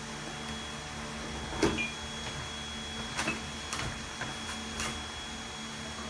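Cardboard gift box and paper packing being handled and pulled open: a few short scrapes and taps, the loudest about one and a half seconds in, over a steady low hum.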